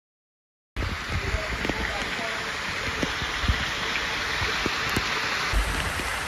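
Dead silence for under a second, then steady rushing and splashing water from a resort lazy river, with water pouring down inside a rock grotto. A few low knocks come from the phone being handled.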